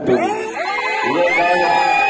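A man speaking into a handheld microphone, his voice carried over a loudspeaker. A thin, steady high tone enters a little past halfway.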